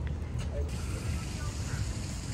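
Steady low outdoor rumble, with faint distant voices.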